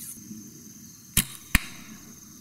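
A recurve bow shot: the sharp snap of the string on release, then the arrow striking a bag target about a third of a second later.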